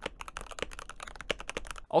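Fast typing on a Dust Silver plastic budget mechanical keyboard with a Kilmat sound-deadening mod: a steady, rapid stream of key clacks, many per second. In the reviewer's view the mod makes no noticeable difference to the sound.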